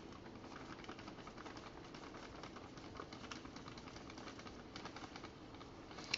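Faint, irregular soft ticking and rustling of powdered sugar being scooped into a glass measuring cup.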